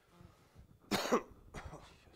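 A person coughing once, sharply, about a second in, followed by a fainter second cough or throat-clearing sound.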